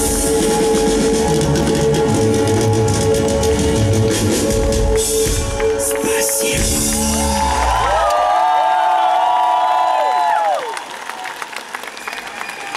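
Live rock band finishing a song: full band with drums until about eight seconds in, then a few high held notes that bend downward as they die away. The music ends about ten and a half seconds in, and the crowd cheers and claps.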